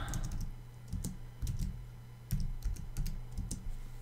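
Computer keyboard typing: an irregular run of short key clicks, a dozen or so strokes with small pauses between them, over a faint low steady hum.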